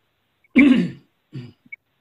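A person coughs once, sharply, about half a second in, followed by a smaller, quieter cough just after.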